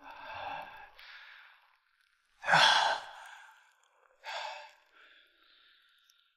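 A man breathing hard in ragged gasps and heavy exhales, in four bursts. The loudest and harshest gasp comes about two and a half seconds in.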